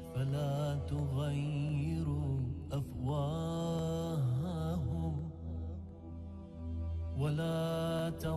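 A man's voice chanting a slow, melismatic religious recitation in long phrases over a steady low drone, pausing briefly before the last phrase starts near the end.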